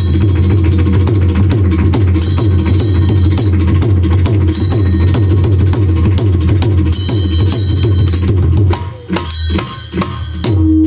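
Mridang (pakhawaj), a two-headed barrel drum, played by hand in a fast, dense roll of strokes with a strong deep bass, while a bright metallic ring recurs about every two seconds. Near the end the roll breaks off into a few separate, sharper strokes.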